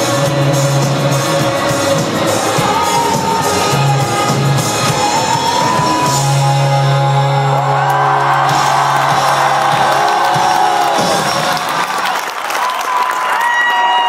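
Live rock band playing loudly through a venue PA, heard from within the audience, with the crowd cheering and whooping over the music.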